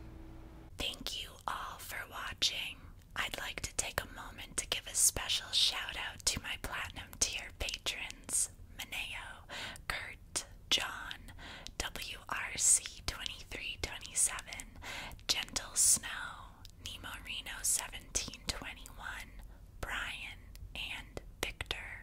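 A woman whispering, broken by many short clicks and brief pauses.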